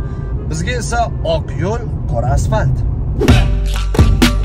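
Steady low road rumble inside a moving car under a man talking; about three seconds in, loud music with a beat starts.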